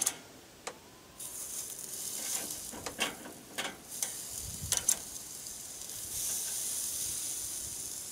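Pork tenderloins sizzling as they are set on the grate over hot charcoal. The hiss starts about a second in and grows louder near the end, with several sharp clicks of metal tongs against the grill grate.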